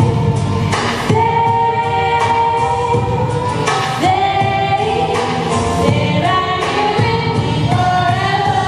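All-female a cappella group singing held chords, changing chord every few seconds.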